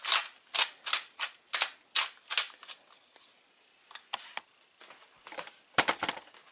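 Manual pepper mill set to a medium grind being twisted back and forth, each turn a short gritty crunch of peppercorns being ground. There are about three a second for the first couple of seconds, then a few fainter ones after a short pause.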